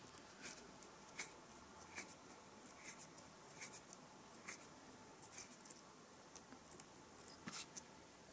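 Faint scratchy rubbing and light ticks of fingers twisting the thin stranded copper wires of a USB cable together, the ticks coming about once a second.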